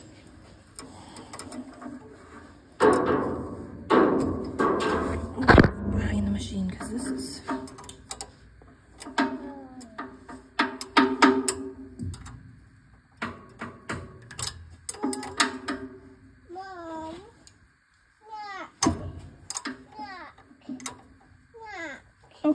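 Wrenches clinking and knocking against the valve rocker adjusters and lock nuts of a Honda GX620 engine, with a cluster of louder knocks a few seconds in. A child's voice is heard now and then in the background.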